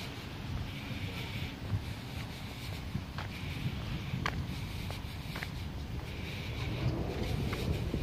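Wind noise on the microphone, a steady low rumble, with a few sharp ticks of footsteps on a dirt path about a second apart.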